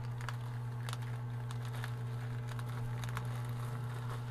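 Plastic poly mailer bag crinkling and rustling as it is handled, in scattered short crackles, over a steady low hum.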